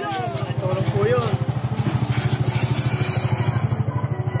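Honda TMX motorcycle's single-cylinder four-stroke engine idling with a rapid, even low putter.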